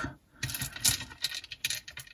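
Small metal spacer beads clicking and tinkling against each other and the pin as they are handled and threaded, a run of light clicks starting about half a second in.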